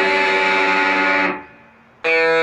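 Overdriven Jackson electric guitar picking a ringing arpeggio pattern across the D, G and B strings. The notes are cut off abruptly just over a second in, leaving a short quiet gap.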